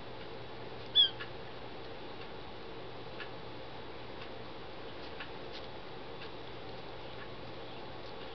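A single short, high-pitched squeak from a young kitten about a second in, while its mother grooms it. Faint scattered ticks and a low steady hum lie underneath.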